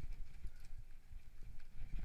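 Mountain bike descending a rough downhill trail: the frame and parts rattle and the tyres knock and thud over the uneven ground in a fast, irregular series of impacts.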